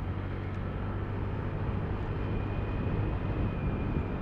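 Motorcycle engine running steadily while riding, with wind and road noise.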